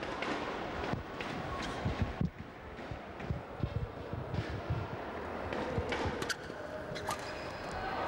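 Steady murmur of an arena crowd, then a few sharp cracks of badminton racquets striking a shuttlecock near the end as a rally gets under way.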